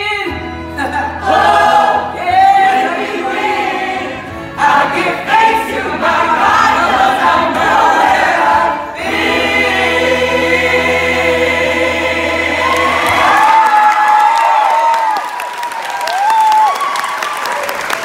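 A gospel-style musical-theatre finale: a cast chorus and a female lead singing full voice over a backing track. About 13 s in, the accompaniment stops, leaving the lead's closing vocal runs sliding up and down, and clapping begins near the end.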